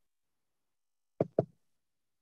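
Two short knocks or taps in quick succession a little over a second in, after a stretch of dead silence.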